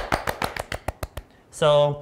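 Two people clapping their hands, a quick run of claps that stops a little over a second in.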